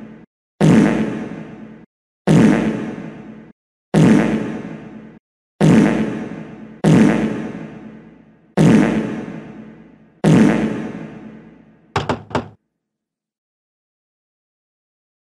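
Cartoon sound effect repeated seven times at an even pace, each a sudden hit that fades out over about a second. About 12 seconds in come three quick knocks, then the sound stops.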